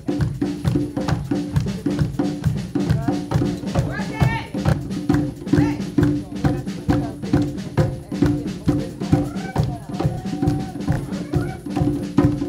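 Conga and drum kit playing a steady, driving rhythm for an African dance. Voices call out over it now and then.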